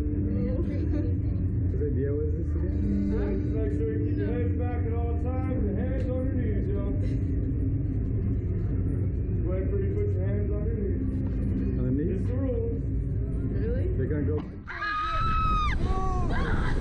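Slingshot reverse-bungee ride launching: a steady low hum with faint background voices cuts off suddenly about fourteen and a half seconds in. A rider then lets out a long, high scream ("Oh, oh god!") as the capsule is flung upward, with a rush of wind on the microphone.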